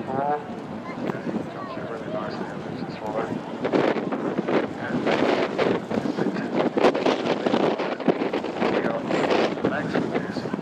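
Indistinct talking from nearby spectators, with wind buffeting the microphone; the sound grows louder and denser about three and a half seconds in.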